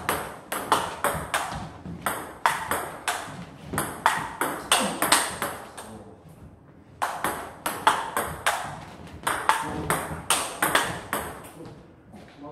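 A table tennis rally: the ball clicking sharply off the rubber-faced paddles and bouncing on the table in quick alternation. Two rallies, broken by a short pause around the middle.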